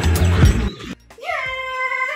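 Rickshaw ride noise, rattling and clicking over a low steady hum, cuts off about a second in. After a brief hush, a long held melodic note begins, rising at its start and then holding steady.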